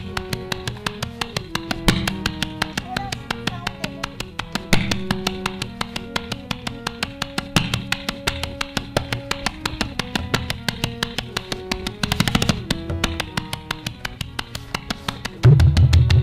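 Tabla solo over a harmonium lehra: the harmonium repeats a stepping melody while the tabla keeps up light, even strokes. There is a quick flurry of strokes about three-quarters of the way through, and loud, deep strokes come in near the end.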